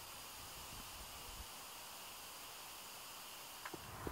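Faint, steady hiss with no distinct sound events, and a couple of faint clicks near the end.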